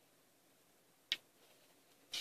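Quiet room broken once, about a second in, by a single short, sharp click.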